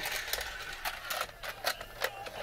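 A battery-powered Christmas staircase toy running, with small Santa figures clicking and rattling up its plastic stairs in a quick, uneven run of sharp clicks, about four or five a second.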